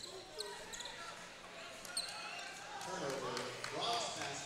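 Basketball arena ambience during a stoppage in play: a low murmur of crowd noise with faint voices. Two brief high squeaks come about half a second and two seconds in, typical of sneakers on a hardwood court.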